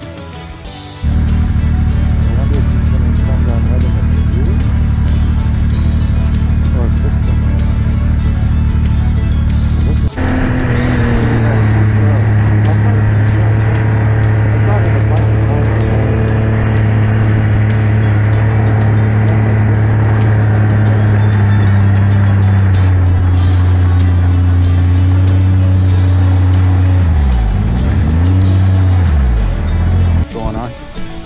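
Snowmobile engine running steadily at speed, heard from the rider's seat, its note changing abruptly about ten seconds in. Near the end the engine note drops and climbs back twice as the throttle is eased off and reopened.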